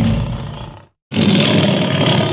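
Big cat roars: one roar dies away within the first second, then after a short silence a second loud roar starts abruptly and carries on.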